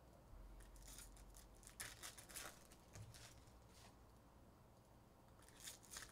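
Faint crinkling and rustling of a foil trading-card pack wrapper and cards being handled, in a few short bursts about a second in, around two seconds in and near the end.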